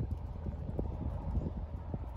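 Horse walking on an arena's sand footing, its hoofbeats coming as irregular soft thuds, over a steady low rumble.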